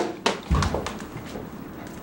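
Footsteps and knocks on a hard floor: a few short, sharp clicks in the first second, with a dull thump about half a second in.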